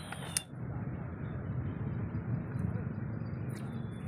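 Steady background noise with no clear source, after a sharp click about half a second in, with a few faint ticks later on.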